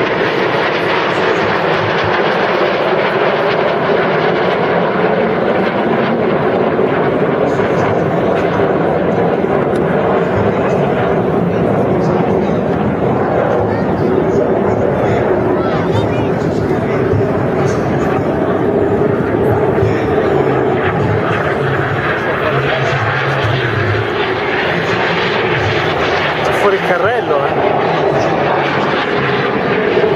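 Jet engines of the Frecce Tricolori's Aermacchi MB-339 display jets flying overhead, a loud continuous rumble that holds steady throughout, with voices in the background.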